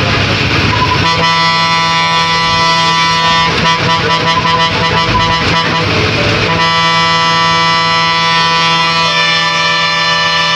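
A bus's air horn sounds in one long held blast starting about a second in, wavering for a few seconds in the middle and then steady again, over the bus's engine and road noise.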